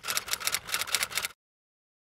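Typing sound effect: a quick, even run of key clicks, about eight a second, that stops abruptly about a second and a half in.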